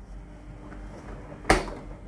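Clothes dryer door clunking once, a single sharp knock about one and a half seconds in, over a low steady hum.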